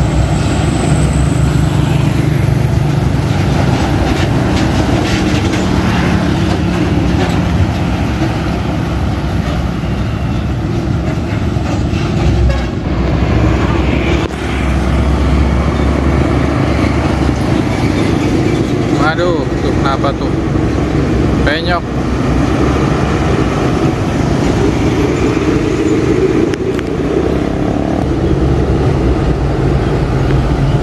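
Heavy diesel trucks driving past on a busy road, their engine and tyre noise a steady low rumble, with a few short rising tones about twenty seconds in.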